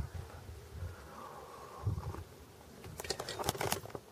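Faint sounds of a man drinking from a thermos cup, with a low thump about two seconds in. Near the end comes a quick run of small clicks and knocks as the camera is moved.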